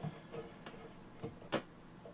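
A few faint clicks from a hard-drive sled being pushed home in a metal drive-enclosure bay and its hand-tightening thumbscrew turned, the sharpest click about one and a half seconds in.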